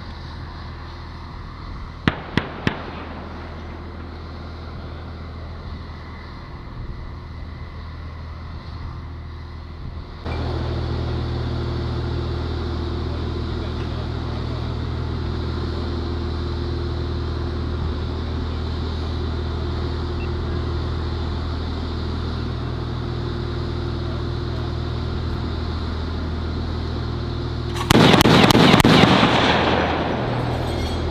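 Three sharp distant cracks about two seconds in. From about ten seconds, the diesel engine of a Stryker SGT STOUT (M-SHORAD) air-defence vehicle idles steadily close by. Near the end comes a loud burst of firing about two seconds long.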